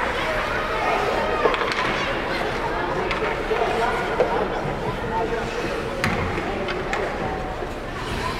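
Indistinct voices of spectators chatting in an ice rink, with a few short sharp knocks from the ice.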